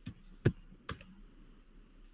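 A few keystrokes on a computer keyboard, heard through a video call: three separate clicks about half a second apart, the middle one the loudest.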